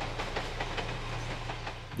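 A passing train running along the tracks: a steady rumble with a low hum and a run of rapid, even clicks from the wheels.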